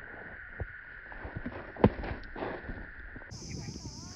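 A single sharp crack of a cricket bat striking a heavy tennis ball, a little under two seconds in, over faint field background and a steady high hum that stops a little after three seconds.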